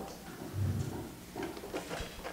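A soft low thump about half a second in, then a few faint knocks, over quiet room noise.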